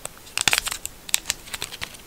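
Foil-lined cleaning-wipe sachet from a screen protector kit crinkling and tearing open between the fingers: a cluster of sharp crackles about half a second in, then scattered ticks.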